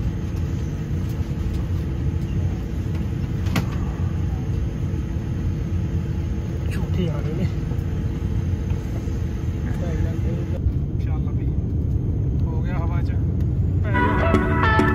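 Airliner cabin noise from the turbofan engines as the jet moves along the ground: a steady low rumble with a couple of steady hums, growing slightly louder in the last few seconds. Faint voices come through now and then.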